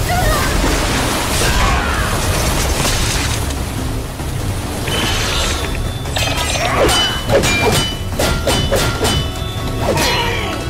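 Cartoon action soundtrack: a dramatic music score over heavy booms and crashes of a fight. A quick run of sharp impacts comes in the second half.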